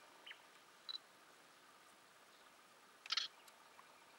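Quiet steady background hiss with a few brief high chirps, and a louder short double click-like burst about three seconds in.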